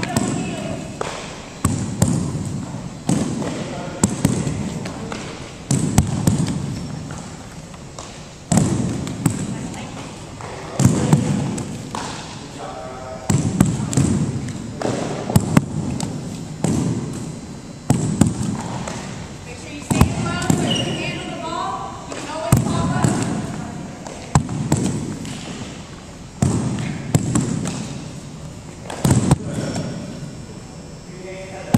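Softballs or baseballs bouncing on a hardwood gym floor and smacking into leather fielding gloves during a short-hop fielding drill: sharp knocks every second or two from several pairs at once, each echoing through the hall.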